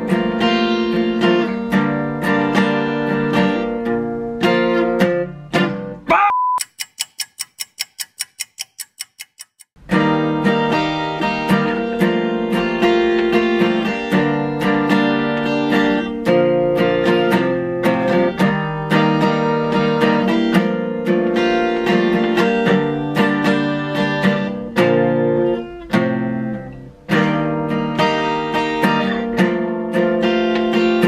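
Steel-string acoustic guitar strummed in repeated chords, a learner practising a new song's chord changes and strum pattern. About six seconds in the strumming breaks off for a few seconds: a short rising tone, then a quick run of evenly spaced ticks. The strumming then starts again and runs on.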